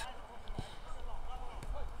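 Faint, distant shouts of footballers calling to each other across an outdoor pitch, over a low background rumble. Two light knocks come about half a second and about a second and a half in.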